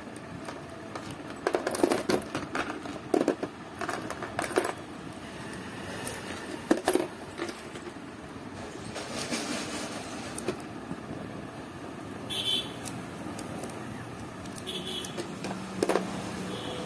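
Motorcycle ignition lock cylinder and keys clicking and clinking as they are handled and taken apart by hand, in clusters of sharp small metal clicks with pauses between.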